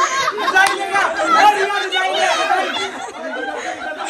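Several people talking over one another in lively overlapping group chatter, loudest in the first couple of seconds and easing a little after about three seconds.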